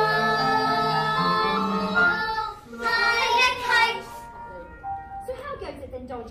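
Children singing a show tune with accompaniment, holding long notes and then singing gliding phrases that stop about four seconds in. Quieter snatches of speech follow near the end.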